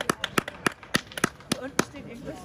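A few people clapping by hand, the separate claps coming about five a second, dying away near the end as voices start talking.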